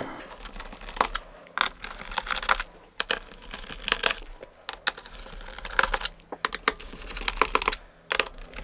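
Small Phillips screwdriver loosening the bottom-cover screws of a Lenovo ThinkPad P1 Gen 4 laptop: irregular small clicks and ticks of the bit and tool against the screws and cover, in short clusters with brief pauses between screws.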